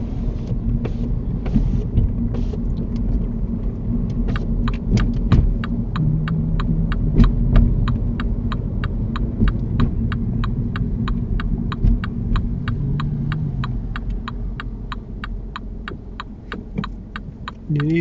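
Inside a moving car, the engine and road rumble run steadily. From about four seconds in, the turn-signal indicator ticks evenly, roughly three clicks a second, as the car approaches a junction and turns out.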